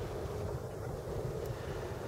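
Wind on the microphone outdoors: a steady low noise with no distinct events.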